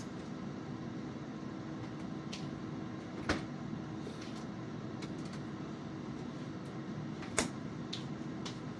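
Steady low kitchen room hum with two sharp knocks, one about three seconds in and one near the end.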